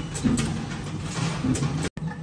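Workshop machinery noise: a steady low hum with a quick run of light clicks and clatter. The sound cuts out for an instant near the end.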